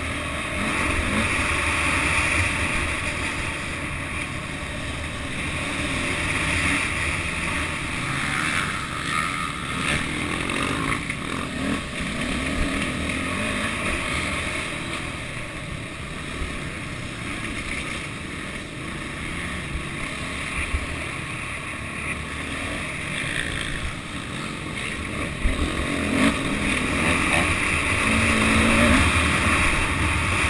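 Continuous engine noise mixed with wind on the microphone, swelling and easing in level without a break.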